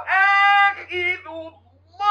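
A man chanting Quran recitation in a high, melodic voice: long held notes with ornamented bends, breaking off about one and a half seconds in. A steady low hum runs underneath.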